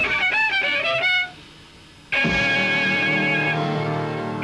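Swing violin playing a quick run of sliding notes, breaking off about a second in; after a short near-silent gap it comes back suddenly on a long held note.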